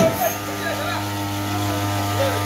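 A small engine running steadily, a constant even drone, with people's voices over it and a short knock right at the start.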